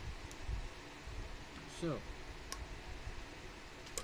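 Handling noise from test leads and a screwdriver on a horn relay's terminals: low bumps and a few faint, sharp clicks.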